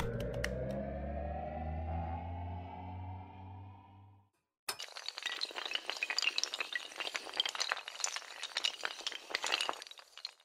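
Logo-animation sound effect: a held tone of several pitches rises slowly for about four seconds and cuts off, then, after a brief gap, a dense rapid clatter of many small clicking impacts of toppling domino tiles runs to the end.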